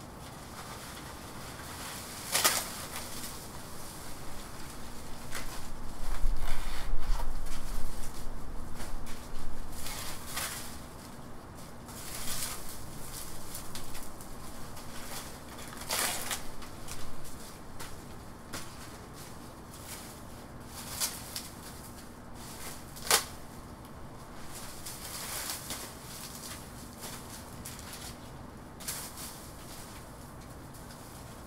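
Dry, dead banana fronds rustling and crackling as they are pulled and cut off the trunks, with a few sharp snaps spread through. A louder low rumble lasts about two seconds, starting some six seconds in.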